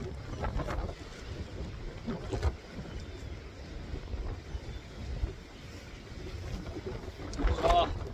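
Wind buffeting the microphone, a low, uneven rumble. A voice starts up near the end.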